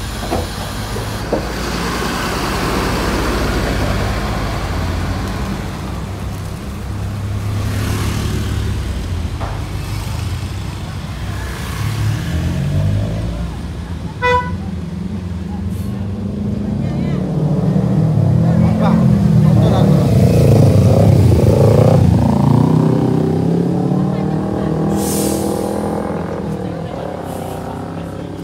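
A large coach bus's engine running as the bus creeps forward at low speed. A short horn toot sounds about halfway through. Near the end the engine grows louder, its pitch rising and falling as the bus pulls ahead.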